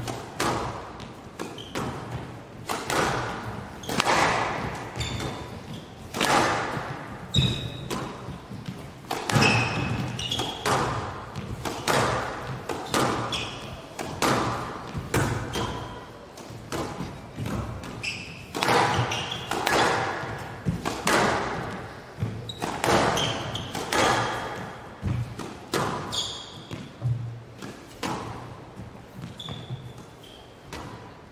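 Squash ball being struck by rackets and hitting the walls in a long, continuous rally, a sharp echoing knock about once a second, with brief high squeaks of court shoes in between.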